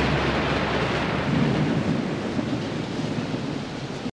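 Distorted electric guitar noise left ringing after the final chord: an even, pitchless hiss-and-rumble wash that slowly fades, its low end dropping away about halfway through.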